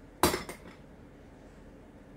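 A metal serving spoon knocking against a dish: one sharp clack about a quarter second in, then a lighter one just after, each ringing briefly.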